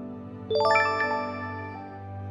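A bright chime sound effect, a quick cluster of ringing bell-like notes about half a second in that fades over the next second, over soft background music. It marks the end of the countdown and the reveal of the correct answer.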